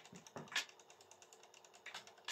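A quiet pause in a man's talk, with a short soft mouth or breath sound about half a second in and faint fine clicking underneath.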